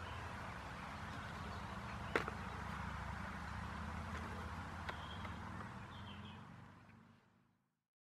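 Outdoor background noise with a low steady rumble, broken by a single sharp click about two seconds in and a few faint high chirps later on. It fades out to silence about seven seconds in.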